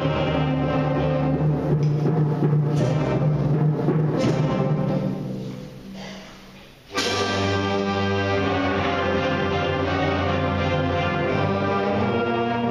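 A school concert band of flutes and brass playing sustained chords; a little past the middle the sound dies away for about two seconds, then the full band comes back in suddenly and loudly.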